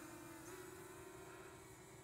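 Near silence with a faint steady hum that shifts slightly in pitch about half a second in.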